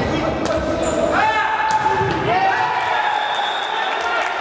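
Futsal game play on a wooden hall floor: the ball being kicked and thudding, shoes squeaking and players calling out, all echoing in a large sports hall.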